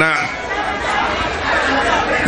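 A large crowd chattering and calling out all at once, a dense wash of many voices. A single man's voice trails off just at the start.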